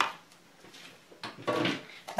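A metal spoon knocks once against a mixing bowl holding grated potato. After a quiet pause come a light click and a brief rustle of handling about a second and a half in.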